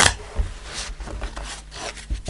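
A deck of tarot cards being shuffled by hand: cards sliding and rubbing against one another in a few soft strokes.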